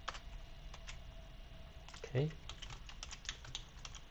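Typing on a computer keyboard: irregular keystroke clicks, a few at first and then a quicker run in the second half, as a line of code is edited.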